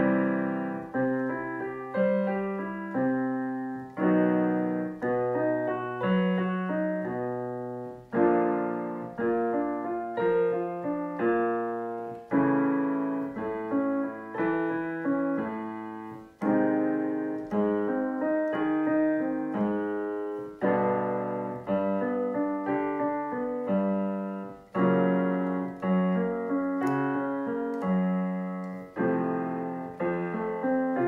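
Digital piano playing the accompaniment for a vocal warm-up. The same short pattern of notes repeats, with a new phrase struck about every four seconds.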